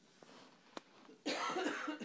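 A single sharp click, then about a second and a quarter in, a person coughs.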